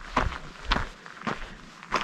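Footsteps crunching on a gravel path, about four steps at a steady walking pace.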